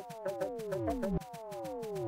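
Electronic music: a fast, even ticking beat under synth tones that slide smoothly down in pitch, one after another, each fall lasting about a second.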